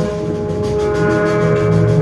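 Free-jazz improvisation: saxophone, trumpet and bowed double bass holding long overlapping tones, with no drums.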